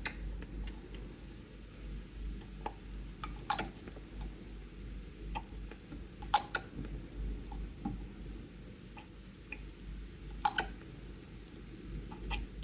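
Sparse small clicks and taps as a flavour-drop dropper bottle is handled over a cup of ice water, about eight scattered ticks over a faint low hum.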